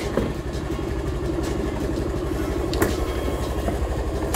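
A TVS scooter's small single-cylinder engine idling steadily while the scooter stands parked, with two light clicks partway through.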